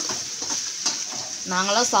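Grated carrot and prawn stir-fry sizzling in a metal pan while a spatula stirs it, with a steady hiss and light scattered scrapes.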